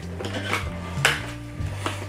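Clear plastic blister tray of a boxed action figure being handled and pulled from its cardboard box: a few sharp plastic clicks and crackles, the loudest about a second in.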